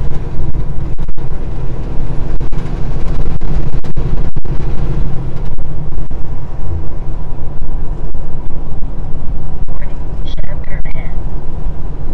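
Semi-truck cab at highway speed: the diesel engine's steady low drone mixed with road and wind noise, heard from inside the cab.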